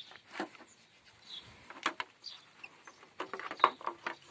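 Scattered light clicks and knocks of a plastic car jump starter and its clamp leads being handled, the sharpest click near the end.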